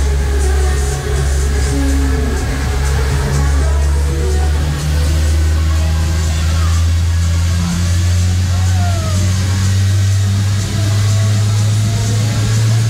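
Loud funfair music from the Dance Jumper ride's sound system over a steady low drone from the running ride, the drone stepping up in pitch about eight seconds in and again near the end.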